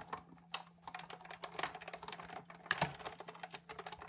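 Sizzix Big Shot manual die-cutting machine being hand-cranked, the plate sandwich with a die rolling through its rollers with a run of irregular small clicks, one louder click near the end.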